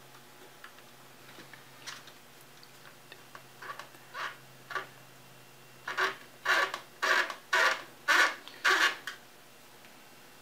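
Hand screwdriver driving a screw into a radiator's mounting hole: a few light clicks, then a quick run of about six short scraping strokes, about two a second, as the screw is turned in.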